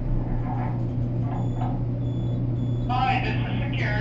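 Steady low hum inside a 1980s Dover traction elevator car as it travels, with faint high electronic tones from the car's emergency call intercom, connected by the security call button pressed by mistake. A voice begins near the end.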